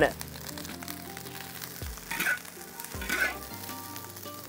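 Egg fried rice sizzling in a wok as it is stirred and pushed around with a metal spatula, with two brief scrapes of the spatula about two and three seconds in. Soft background music runs underneath.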